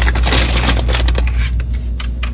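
Crinkling and rustling of a plastic bag of packaged salad being handled, dense for the first second or so, then thinning to a few light crackles, over a steady low hum.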